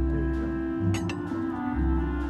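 Orchestral film score with held notes over deep bass notes that come and go. A glass clinks briefly about a second in.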